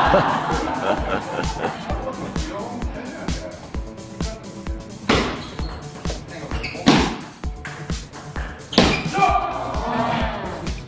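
Table tennis rally: three sharp, loud ball strikes with a paddle about two seconds apart in the second half, over background dance music with a steady beat and some spectator chatter at the start.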